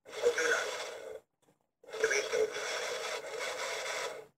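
Yoda Jedi Talker toy's tiny speaker giving out its weird, noisy voice sound in two bursts, a short one and then a longer one after a brief pause; the owner suspects something might be wrong with it.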